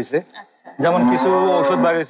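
A cow mooing once, a single long, steady low call starting just under a second in, after a brief pause in the talk.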